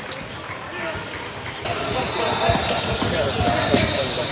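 Basketball game sound in a gym: a ball bouncing on the hardwood court, with voices of players and onlookers in the background. About one and a half seconds in, the sound changes suddenly and the bouncing and court noise get louder.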